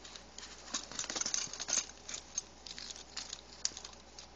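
A Chihuahua nosing and pawing through a bag of odds and ends: quick, irregular rustling and crinkling, thickest for about a second near the start, then scattered rustles and clicks.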